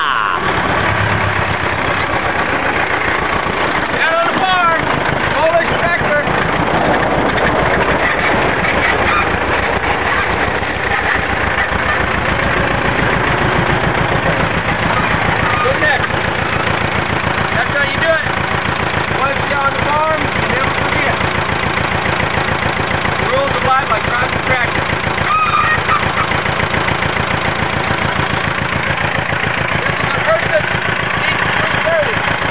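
Small farm tractor's engine running close by with a steady, rapid chugging, driven up and then left running beside the people.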